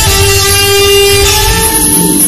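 Alto saxophone holding one long note over a backing track, moving to a new note near the end.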